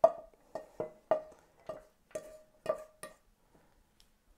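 A wooden spatula knocking and scraping food out of a nonstick frying pan into a ceramic dish: about nine sharp knocks, each with a short ring, at an uneven pace, dying away to faint taps after about three seconds.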